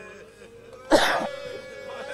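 A man coughs once, sharply, close to the microphone about a second in, with faint voices behind.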